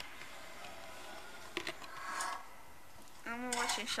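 Candy boxes being handled: a sharp tap about one and a half seconds in and a brief rustle just after. A voice starts near the end.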